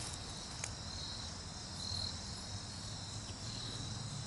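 Crickets chirping: a steady high trill with louder pulses about every second and a half.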